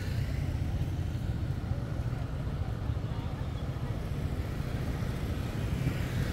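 Steady low rumble of motorbike and street traffic, with no single sound standing out.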